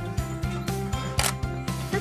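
Background music with a steady beat, and a single DSLR shutter click a little past a second in as a portrait is taken.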